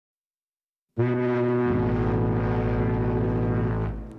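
A ship's horn sounds one long, low blast starting about a second in, with a deep rumble joining beneath it shortly after; it stops just before the end.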